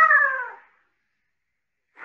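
A domestic cat's meow: the tail of one drawn-out call falling in pitch, fading out about half a second in.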